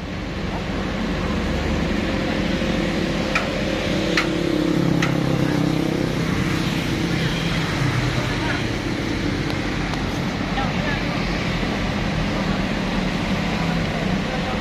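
A vehicle engine running steadily, its pitch shifting a little in the middle, with three short sharp knocks a few seconds in.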